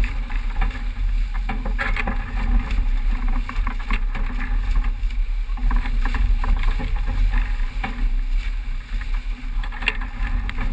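Wind buffeting the microphone over the rush of water along a racing sailboat's hull as it sails fast in strong wind, with scattered knocks and splashes.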